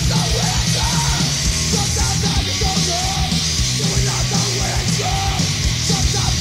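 Hardcore punk demo recording: distorted electric guitar, bass and drums playing fast and loud, with a singer yelling over them.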